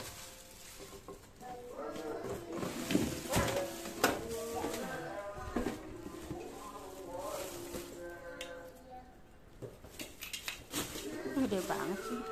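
Plastic packaging rustling and a few sharp knocks and clinks as a hot air rework station and its cables are handled during unpacking.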